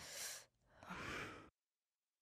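A person sighing: a short breath at the start and a longer, drawn-out breath about a second in.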